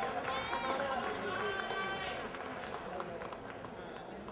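Audience voices and a few whoops, with scattered clapping fading out as the applause dies down.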